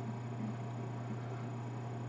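Quiet room tone: a steady low hum with faint hiss underneath.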